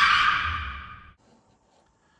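A short breathy whoosh, loudest at the start and fading away over about a second.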